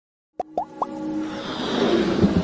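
Logo-intro sound effects: three quick popping 'bloops' that each slide upward in pitch, then a swelling build-up of electronic music growing louder.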